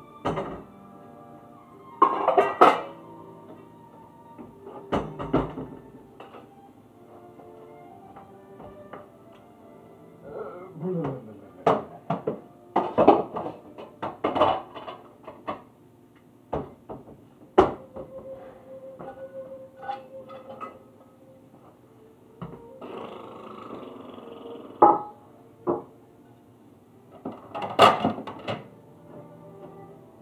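Background music with repeated sharp clatters and knocks of dishes and kitchenware being handled.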